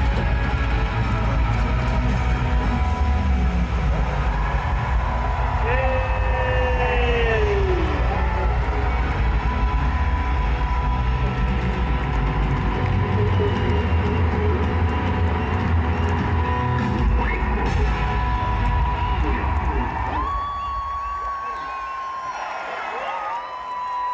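Punjabi pop concert music played live over an arena sound system, with heavy bass and a voice singing over it. About twenty seconds in the bass drops out, leaving a few long held notes.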